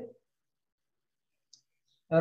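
Near silence after the last of a man's spoken word at the very start, with one or two faint small clicks about one and a half seconds in.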